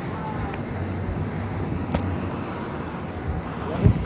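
Steady outdoor street background noise, traffic-like, with a single sharp click about two seconds in and a brief low sound near the end.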